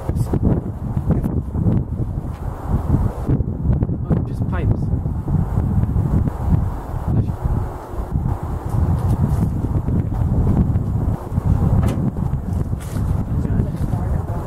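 Wind rumbling on the microphone, a steady low buffeting, with a few light knocks and scrapes from the camera being handled against the trailer's side.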